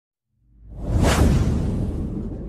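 Cinematic whoosh sound effect over a deep rumble: it swells from silence about half a second in, peaks about a second in with a hiss that falls in pitch, then the rumble slowly dies away.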